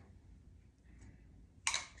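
A short, sharp scrape of a metal spatula against a glass bowl of raspberry preserves near the end, after a quiet stretch of light spreading noise.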